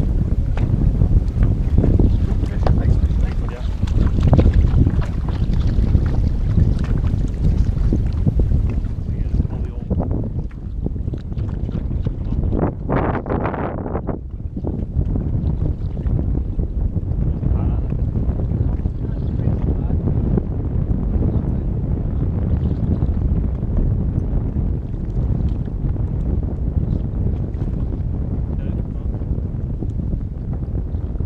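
Wind buffeting a camera microphone on an open boat: a heavy, steady low rumble, stronger in the first several seconds, with a brief brighter rush about thirteen seconds in.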